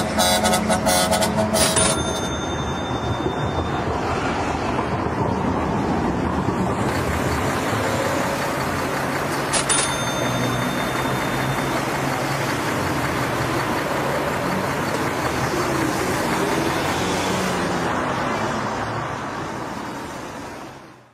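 Busy city street traffic: a steady rumble and hiss of passing vehicles, with car horns honking in the first couple of seconds and a short sharp high beep about halfway through. It fades out at the end.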